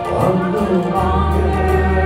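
A small worship team of mixed male and female voices singing a gospel hymn together over sustained electric keyboard chords.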